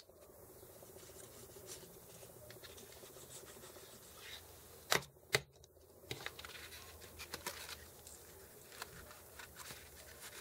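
Faint rustling and light tapping of paper being handled and pressed down on a craft desk, with two sharp clicks about five seconds in, half a second apart.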